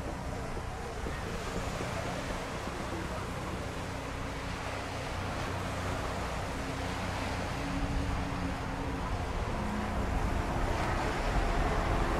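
Steady beach ambience of wind and surf, with wind rumbling on the microphone, gradually getting louder toward the end.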